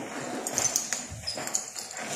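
Braided rope lines being handled and shaken out: a steady rustle with several small sharp clicks from their metal fittings.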